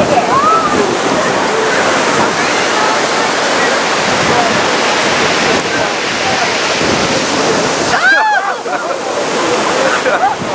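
Rough sea breaking against a concrete breakwater: a loud, steady rush of surf and spray, with people's voices calling over it and a louder shout about eight seconds in.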